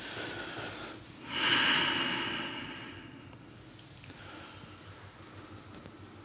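A man's breathing, heard up close: a soft breath, then a longer, louder breath starting about a second in and fading out over about two seconds.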